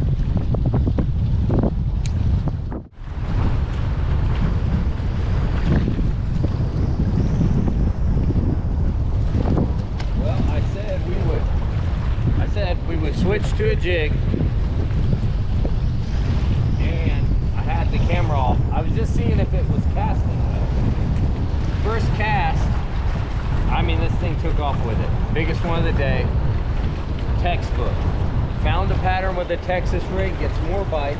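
Strong wind buffeting the microphone, a loud steady low rumble over choppy water, cutting out briefly about three seconds in.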